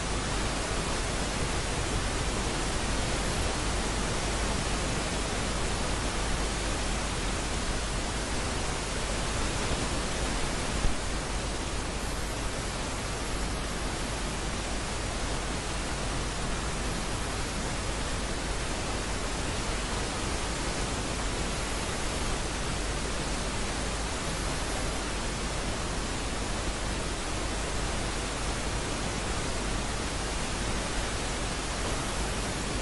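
Steady, even static hiss with no other sound in it, broken only by a single brief click about eleven seconds in.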